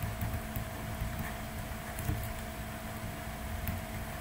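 Quiet room tone: a steady faint electrical hum under low background noise, with a few soft ticks.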